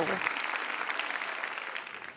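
Studio audience applauding, a dense steady clapping that tapers off near the end.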